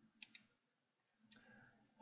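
Near silence broken by two quick computer mouse-button clicks about a tenth of a second apart, a double-click, about a quarter second in. A faint short sound follows near the end.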